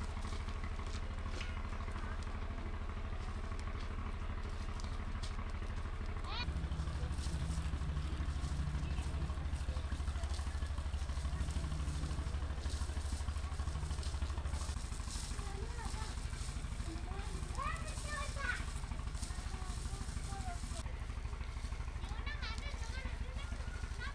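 Outdoor ambience: a steady low rumble that grows louder for several seconds from about six seconds in, with a few short chirps near the end.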